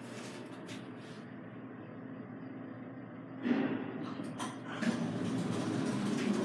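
Steady hum inside a Fujitec traction elevator cab travelling down. About halfway in, a louder uneven rustling noise joins it.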